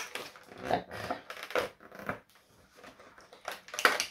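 Fingernails picking and scraping at the small cardboard door of an advent calendar, a few faint short scratches and crinkles with a lull in the middle.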